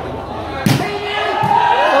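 A volleyball struck hard by a hand with one sharp smack about two-thirds of a second in, then a lighter hit under a second later, with voices calling out over the crowd.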